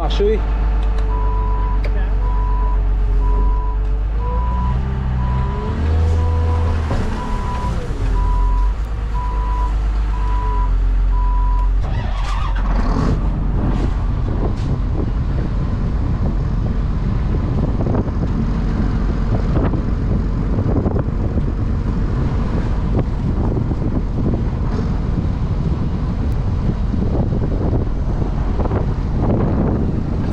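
A heavy vehicle's engine running while it reverses, its back-up alarm beeping about one and a half times a second for the first twelve seconds as the engine speed rises and falls. After that the alarm stops, and engine noise with repeated clanks and rattles continues.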